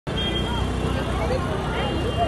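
Busy city street ambience: a steady low rumble of traffic with the faint chatter of a crowd of people walking.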